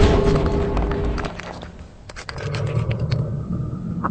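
Dramatic soundtrack music that holds a chord for about a second, then a quick run of sharp clicks, then a low rumble.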